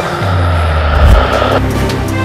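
Soundtrack music with a deep bass note under a rushing whoosh sound effect that cuts off sharply about a second and a half in, after which a steady beat carries on.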